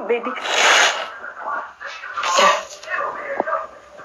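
A woman crying: two short, breathy, hissing sobs, about half a second and two and a half seconds in, with faint broken voice sounds between them.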